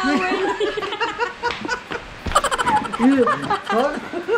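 A man laughing in repeated short bursts, mixed with bits of talk, with a brief sharp noisy burst about halfway through.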